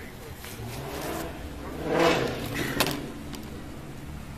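A car driving past on the road, rising to a peak about two seconds in and fading away, over a steady low hum; a sharp click sounds just before three seconds.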